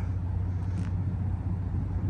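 A 2016 Nissan Frontier PRO-4X's 4.0-litre V6 idling with a steady low rumble through a 3-inch MBRP stainless catback exhaust.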